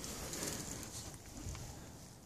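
Faint background noise with a couple of soft ticks about a second and a half in, growing quieter toward the end.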